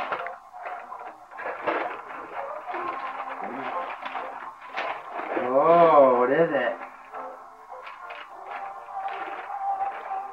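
Indistinct voices with music in the background, and a wavering sung or voiced note that is the loudest sound, about six seconds in.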